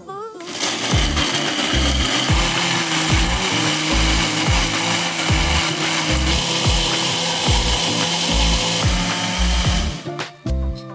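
Small electric blender's grinding jar running at full speed, grinding shallots, garlic, candlenuts and shrimp paste with a little oil into a thick spice paste. It starts about half a second in, runs steadily and cuts off at the end.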